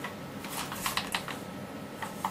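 Light clicks and rustles from a King Arms AK-74M airsoft electric gun being turned over and checked in the hands, bunched in the first second or so.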